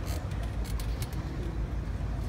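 Steady low rumble of outdoor tennis-stadium ambience on a phone microphone, with a few faint ticks and no clear ball strikes.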